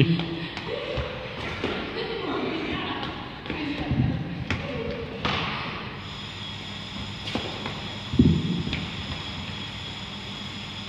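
Running footsteps and small dumbbells being set down on a sports-hall floor, with heavy thuds about four seconds in and again about eight seconds in.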